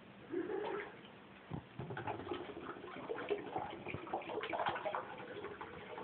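Bath water sloshing and scattered plastic clicks and knocks as a toddler handles a plastic bottle and its cap in a bubble bath, with a short vocal sound from the child about half a second in.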